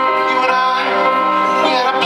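Live band music with violin, guitar and keyboard holding steady chords, between sung lines. A line slides up and down in pitch through the middle of the passage.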